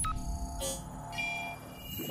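Electronic sound-design sting: several held synth tones, with a short swish a little after half a second and a rising sweep right at the end.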